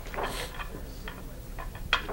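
Faint scattered clicks and light knocks over a low room hum, with one sharper click near the end.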